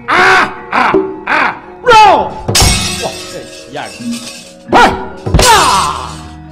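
Wayang kulit fight scene: the dalang's short vocal cries over gamelan, punctuated by two loud metallic crashes of the kecrek (struck metal plates), about two and a half and five and a half seconds in.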